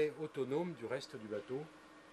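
Faint, indistinct male speech in the background, with a steady low hum under it.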